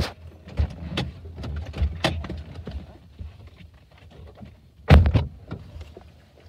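Scuffs, knocks and handling noise of people shifting about inside a parked car's cabin, with one heavy thump about five seconds in.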